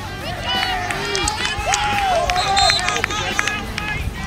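Several people shouting across an outdoor field, voices rising and falling and overlapping, loudest in the middle, with scattered sharp clicks among them.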